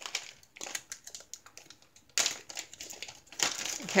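Clear plastic packaging bag crinkling and crackling in irregular bursts as hands open it and handle the plastic accessory trays inside, with a louder burst about two seconds in.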